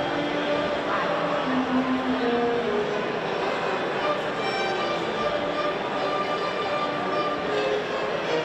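A string ensemble of violins and a cello playing, with long held notes that move from one pitch to the next.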